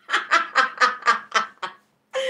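A woman laughing: about seven short bursts of laughter in quick succession.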